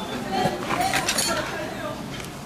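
Indistinct voices talking, with a few light clinks about a second in.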